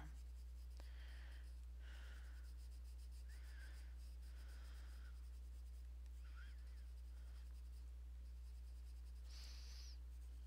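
Caran d'Ache colourless blender pencil rubbing over coloured pencil on paper in a series of short, faint strokes, one higher and scratchier near the end, over a steady low hum.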